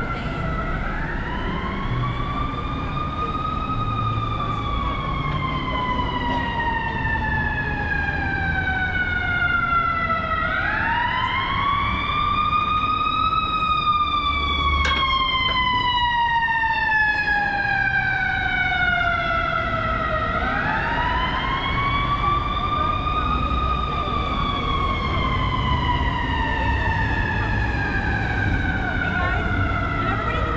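Emergency vehicle siren sounding a slow wail over city street traffic. It goes through three cycles, each rising in pitch over about three seconds and then sliding slowly down over about seven. A single sharp click comes about halfway through.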